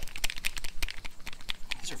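A quick, irregular run of small clicks and ticks as a handheld crank-type extruder tube and its plunger crank are handled and turned.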